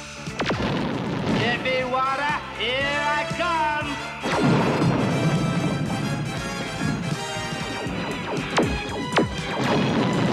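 Cartoon battle sound effects over action music. Warbling, pitch-bending laser zaps fill the first few seconds. About four seconds in a sudden explosion sets off a low rumble, and two sharp blasts follow near the end.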